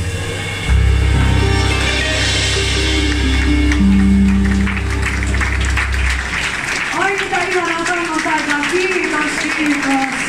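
Live band of accordion, archtop guitar, electric bass and drums playing the last bars of a song, closing on a final chord about six seconds in. Audience applause and voices follow.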